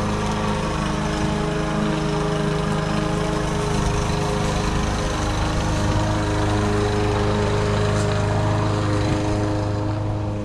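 Gas push mower's small engine running steadily while cutting grass: an even, unchanging engine note as the mower is pushed across the lawn.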